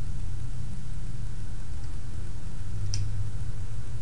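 Steady low hum throughout, with a single short, high click about three seconds in from the metal parts of a four-bladed knife that separates into two halves being handled.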